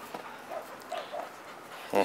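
Dog giving a few short, faint whimpers, with a brief louder sound right at the end.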